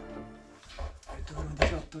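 Background music fading out, then a man's voice in a small, enclosed room, with a single sharp knock about a second and a half in.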